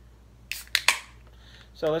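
Pull tab of an aluminium beer can being opened: a short hiss and two sharp cracks about half a second in. The can opens cleanly, with no gushing.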